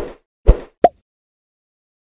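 Subscribe-button animation sound effects: two soft pops about half a second apart, then a short pitched blip.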